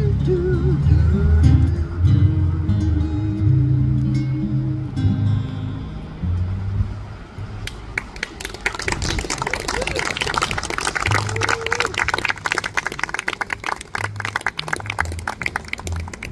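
Upright bass and acoustic guitar playing the song's closing notes, with a held, wavering note above them, dying away about six seconds in. From about eight seconds in, an audience applauding.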